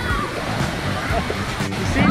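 Splashing, rushing water in a water-park splash pool, with voices and background music over it.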